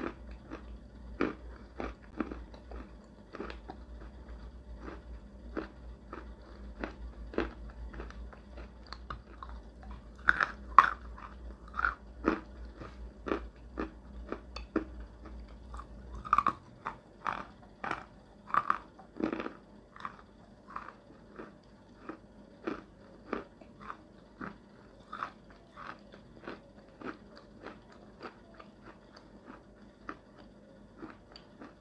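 A person chewing and crunching chalk close to the microphone: irregular crunchy bites and chews, one or two a second, with a louder flurry about a third of the way in.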